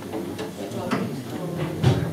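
Scattered knocks and clicks of stage gear being handled while the band sets up between songs, about four of them, the loudest a low thump near the end, over low voices in the room.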